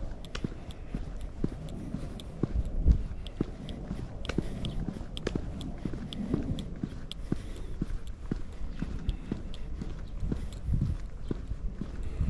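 Footsteps of a person walking at a steady pace on an asphalt road, about two steps a second, with a low rumble underneath that swells now and then.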